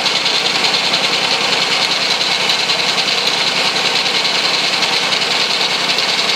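Homemade three-cylinder engine, built from small single-cylinder engines joined on a common shaft, running steadily with fast, even firing pulses.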